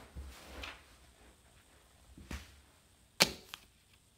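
A thrown toothpick: a faint whoosh, then about three seconds in a sharp strike as it hits the paper cutout, followed by a lighter click.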